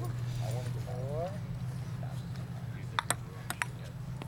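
Table tennis ball ticking off the table and paddles in a rally: four sharp clicks in two quick pairs near the end. Under it there is a steady low hum, and faint voices early on.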